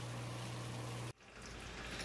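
Steady bubbling hiss of aerated water over a constant low electric hum, as from an aquarium air pump in a small tub; it cuts off abruptly a little over a second in. A fainter steady water sound from an aquarium filter follows.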